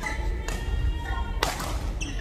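Badminton rackets striking a shuttlecock during a fast rally, two sharp hits about a second apart that ring briefly in a large hall, with squeaks from shoes on the court floor between them.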